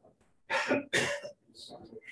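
A person coughing twice in quick succession, two short harsh coughs about half a second in, followed by faint speech near the end.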